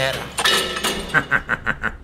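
A man laughing in a quick run of short, evenly spaced bursts, about six in under a second.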